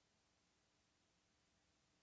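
Near silence: a faint steady hiss with no events.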